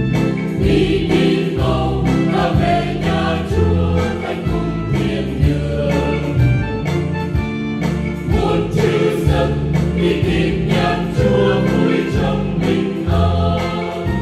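A church choir singing a Vietnamese Catholic hymn in harmony, with accompaniment under the voices.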